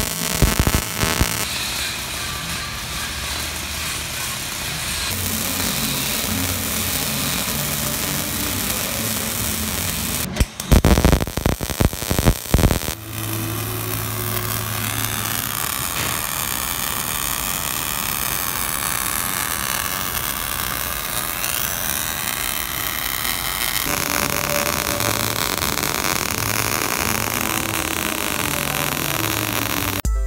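Steel shelter walls being arc-welded: a steady hiss, with background music underneath and a burst of loud knocks about eleven seconds in.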